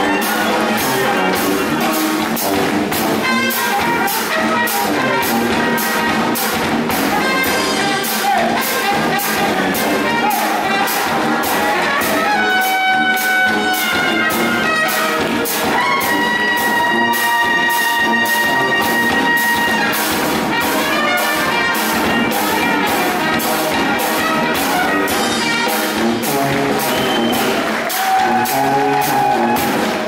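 Traditional New Orleans jazz band playing live: trumpets, trombone and tuba over a steady, fast drum beat. A horn holds one long note about halfway through.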